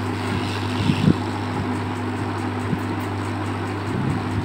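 SMD hot-air rework station's blower running steadily, a low hum over a hiss of air, as it heats a surface-mount IC on the circuit board to desolder it.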